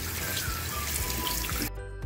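Kitchen tap water running onto chicken livers in a plastic colander and splashing into the sink, shut off suddenly near the end.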